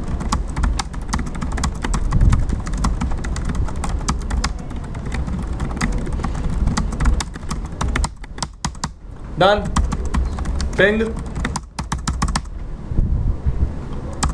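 Computer keyboard typing: quick keystrokes for about eight seconds, then a few more after a short pause.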